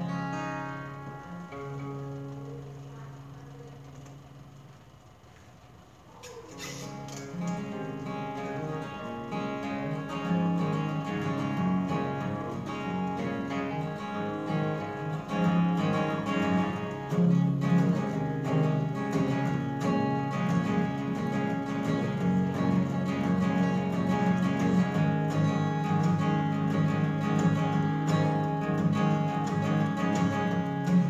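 Solo acoustic guitar playing the instrumental intro to a song. A chord rings and fades over the first few seconds, then steady rhythmic strumming and picking begins about six seconds in and carries on.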